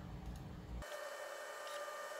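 Faint low room hum. Less than a second in, it gives way to a faint steady electronic whine with a couple of faint ticks from the EinScan SE 3D scanner and its turntable as the scan runs.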